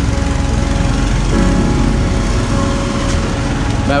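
A small engine running steadily at idle, a constant drone with a low, pulsing rumble.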